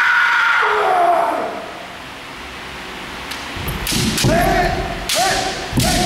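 Kendo players' kiai shouts: one long yell falling in pitch at the start, then, from about three and a half seconds in, a run of short sharp yells mixed with knocks and thuds of bamboo shinai strikes and feet stamping on the wooden floor.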